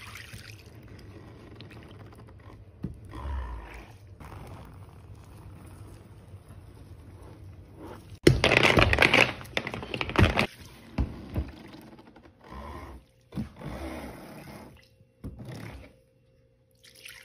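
Molten wax pouring softly from a metal pitcher into a silicone wax-melt mold. About eight seconds in, a metal scraper bites into excess set wax on the mold with a sudden loud crack and a rough scrape lasting about two seconds, followed by several shorter scrapes.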